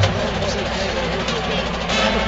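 Stadium crowd noise: many voices talking at once over a low, steady rumble, with no clear band music.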